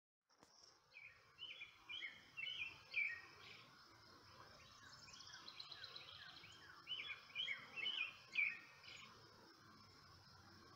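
A songbird singing two phrases of quickly repeated chirping notes, each about two seconds long and growing louder, one starting about a second in and the other about seven seconds in, with a fainter high trill between them. Steady outdoor background hiss underneath.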